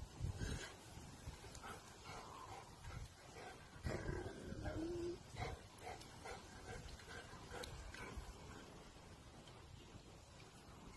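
Rottweiler whining with short low woofs, loudest about four seconds in, with a brief held whine just before five seconds.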